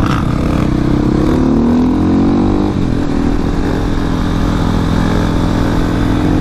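KTM supermoto's single-cylinder engine running under throttle. Its pitch rises from about a second in, breaks just before the three-second mark, then holds steady.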